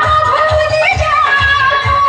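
Loud amplified Hindi song music with a steady drum beat, about two to three beats a second, under a long, wavering melody line.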